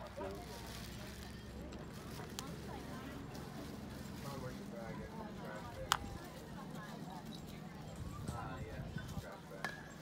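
Faint spectator chatter in the stands at a youth baseball game, with one sharp crack about six seconds in.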